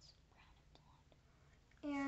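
Faint whispering over low room noise, then a girl's voice starts speaking just before the end.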